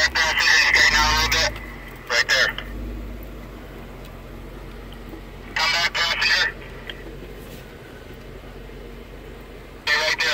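A few short bursts of indistinct voices over the low, steady hum of a Jeep Wrangler Sahara's engine creeping along at low speed.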